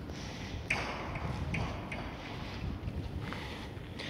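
Footsteps on a paved outdoor surface, a step about every second, over a steady low rumble of wind on the microphone.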